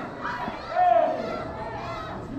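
Young voices shouting and cheering, with one long high-pitched shout about a second in.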